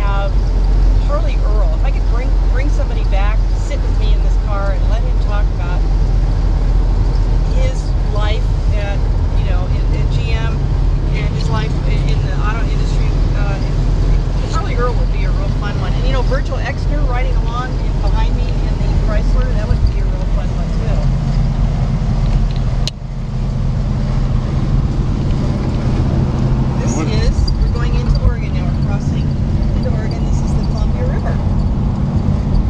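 Steady engine and road drone inside an old car's cabin on the highway, with voices talking indistinctly over it. The drone changes abruptly about three quarters of the way through.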